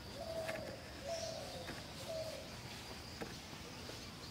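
A dove cooing: three slightly falling coos in the first two and a half seconds, over a steady high-pitched background buzz.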